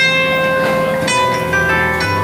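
Zither played live and amplified: plucked notes ring out and overlap in a slow melody over held chords, with new notes struck near the start, about a second in and again shortly after.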